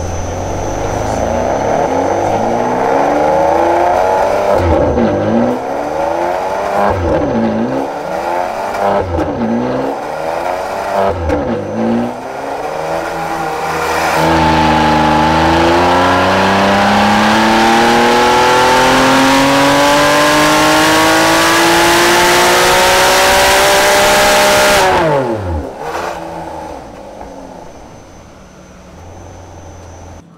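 Ferrari 599 GTB's naturally aspirated V12, on its factory exhaust, running on a chassis dyno: first a series of rev rises, each cut short by a quick dip, then about 14 seconds in a single long full-throttle pull with the pitch climbing steadily for about ten seconds. Near the end the throttle closes, the revs fall sharply and the engine goes quieter as the rollers coast down.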